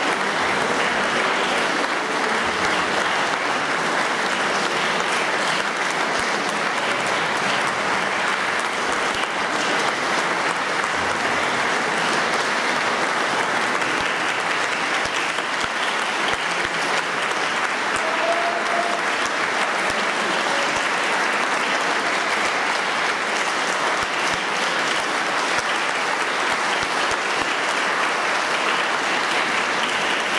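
Audience applauding steadily and continuously.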